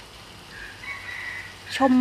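Steady low background with a faint, thin, high whistle-like note held for about half a second, about a second in. A woman's voice starts speaking near the end and is the loudest sound.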